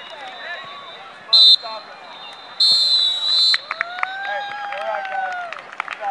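Referee's whistle blown to end the half: a short sharp blast, then a longer blast of about a second. A drawn-out voice call and a few sharp clicks follow over background chatter.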